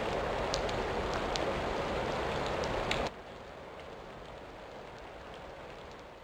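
Steady rain falling, a dense hiss with a few sharper individual drops. About three seconds in it drops abruptly to a quieter, softer level.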